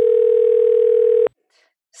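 A steady electronic tone at a single mid pitch, like a test beep or dial tone, held at an even level and cutting off suddenly a little over a second in.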